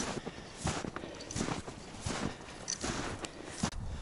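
Footsteps in snow at a walking pace, about one step every 0.7 seconds.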